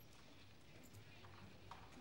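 Near silence: faint street background with a few soft clicks.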